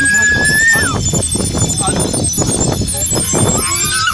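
A small child's high-pitched squeal, held for about a second and dropping at the end, followed by babbling and voices.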